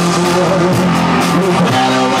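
Live hard rock band playing loud, with electric guitars holding sustained notes over drums and regular cymbal hits.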